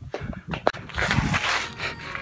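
Rustling and knocks from a handheld phone being carried about, with a sharp click a little under a second in and a rush of noise in the second half.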